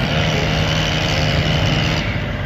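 A small engine running steadily at high speed, from the work cutting down palm trees; its pitch wavers slightly near the start, then holds.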